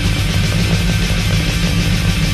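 Heavy metal band playing an instrumental stretch, electric guitar over a dense, steady, loud wall of sound with no singing.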